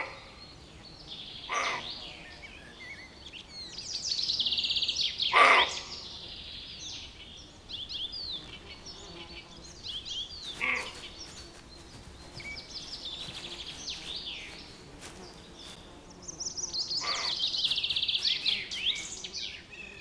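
Roe buck barking: about five short barks spaced several seconds apart, the first and third the loudest. Songbirds sing fast high trills and warbles throughout.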